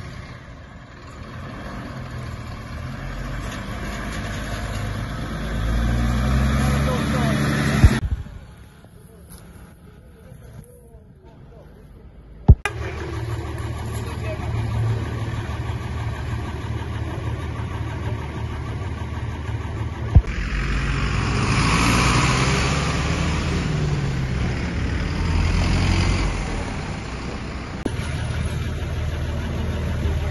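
Road vehicle engines in several short clips joined by abrupt cuts: an engine note rising, a quiet stretch, a steady low idle, then a swell of engine and road noise as a vehicle passes.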